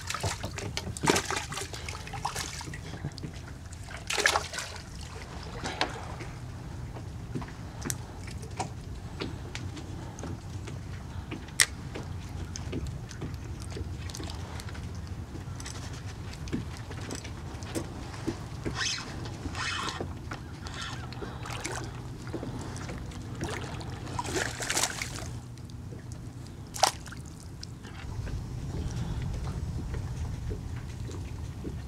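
Water lapping and sloshing against a plastic fishing kayak's hull, with a splash about a second in and scattered light clicks and knocks through the rest.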